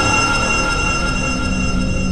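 Intro of a tearout dubstep track: a sustained electronic drone of several steady high tones over a low rumble, slowly fading.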